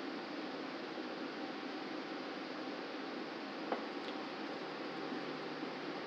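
Steady hiss of room tone picked up by the meeting microphones, with a single faint click about halfway through.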